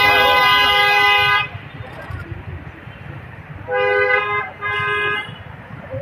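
Vehicle horn honking: one long blast that stops about a second and a half in, then two shorter honks close together around four and five seconds in, over low street traffic noise.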